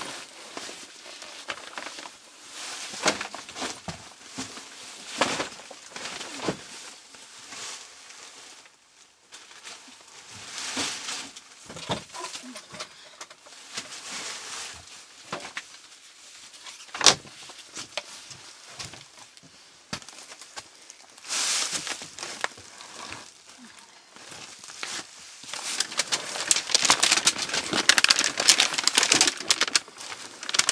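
Plastic bags and tarp sheeting rustling and crinkling in irregular bursts as stored things are handled and shifted, with one sharp knock about halfway through. The crinkling grows denser and louder over the last few seconds.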